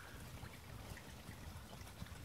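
Faint trickling of water in a garden pond, with a few soft clicks.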